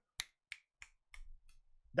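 About five short, sharp clicks over a second and a half, irregularly spaced, with quiet between them.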